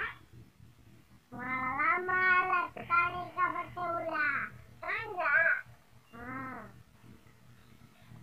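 A boy's voice in long, drawn-out wailing cries with gliding pitch: a long bout starting just over a second in, then two shorter ones with brief pauses between.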